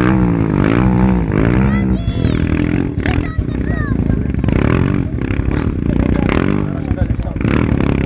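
Motorcycle engine revving up and down in quick throttle swings as the bike is held in a wheelie, with people talking in the background.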